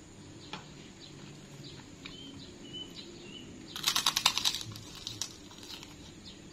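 Crunching of a crisp krupuk (Indonesian fried cracker) bitten and chewed: a fast run of sharp crackles lasting under a second just past the middle. Faint short bird chirps sound a little earlier.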